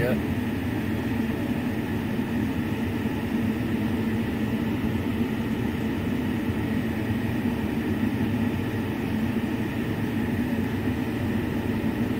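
A vehicle engine idling: a steady low rumble with faint steady tones, unbroken throughout.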